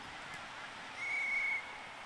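An umpire's whistle blown once, a single high, steady note lasting about half a second, starting about a second in, over faint wind and open-field noise.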